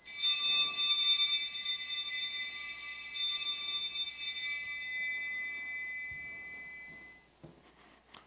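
Altar bells rung at the elevation of the chalice after the consecration: a cluster of high, bright bell tones that starts suddenly and keeps ringing for about four and a half seconds, then dies away and fades out about seven seconds in.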